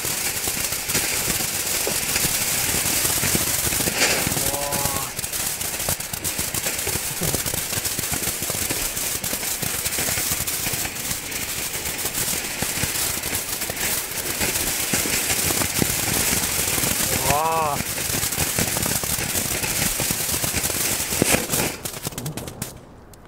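Lesli Red Blink firework fountain burning: a steady spraying hiss packed with rapid crackling and popping from its red strobe stars.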